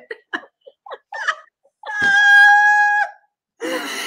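Women laughing in short bursts, then one long, steady, high-pitched squeal of laughter lasting about a second, followed by more laughter near the end.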